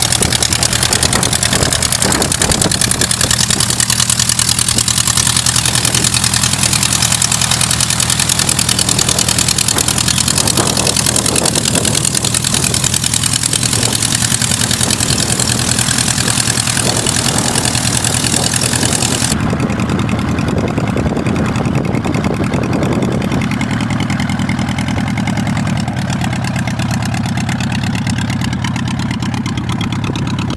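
An engine running steadily, with an even low hum under a loud hiss. About two-thirds of the way through, the higher hiss suddenly drops away and the hum carries on.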